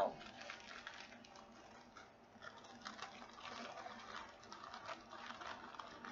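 Faint handling sounds: small plastic bags of diamond painting drills rustling and clicking lightly as they are moved about.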